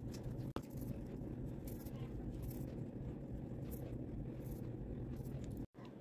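Faint soft brushing strokes of a makeup brush on the face over a low room hum; the sound cuts out for a moment near the end.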